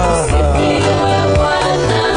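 Gospel worship music playing, with a melody over a bass line in a steady rhythm.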